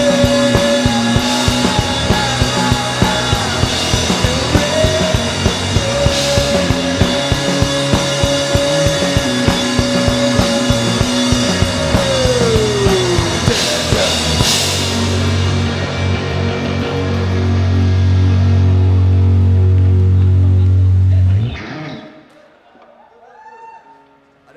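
Live rock band playing: fast, driving drum kit under held guitar and keyboard tones, with a pitch sliding down about halfway. The drums then stop and one long, low note is held for several seconds before cutting off suddenly, about two seconds before the end, as the song finishes.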